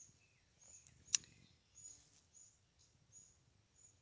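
Faint outdoor quiet with a small bird giving short, high chirps every half second to a second, and one sharp click about a second in.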